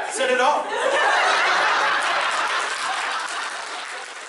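Audience laughing and applauding, a steady patter of clapping that thins out near the end.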